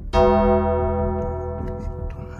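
A piano-like keyboard chord struck once just after the start and left to ring, fading slowly.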